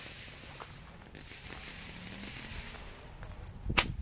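Faint fizzing and ticking of a burning Black Cat bottle rocket fuse, then one sharp crack near the end as the bottle rocket goes off.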